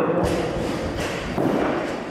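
Dull thuds of a heavily loaded barbell with bumper plates, a few in the first second and a half, as the weight moves through a heavy back squat.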